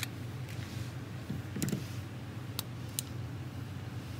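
Glock 17 Gen5 pistol being field-stripped: a handful of sharp, spaced-out clicks and clacks of polymer and metal as the slide is released and taken off the frame. Under them runs a steady low hum.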